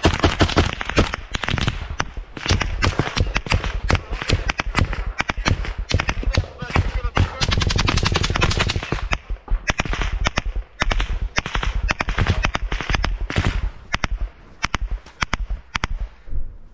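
Automatic gunfire at close range: rapid, almost continuous bursts for about the first nine seconds, then shorter bursts and single shots with gaps between them.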